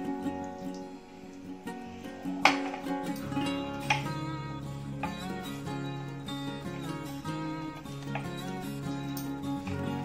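Background instrumental music with steady pitched notes, with a couple of short sharp taps about two and a half and four seconds in.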